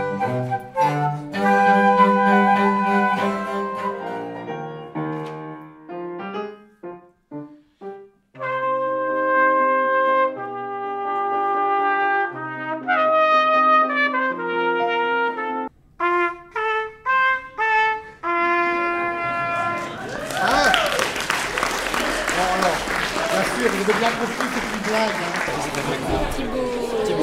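A flute playing baroque music with a small ensemble for the first few seconds, dying away into scattered notes. From about eight seconds in, a solo trumpet plays a run of held and repeated notes with short breaks. Near the end, many people chattering in a room.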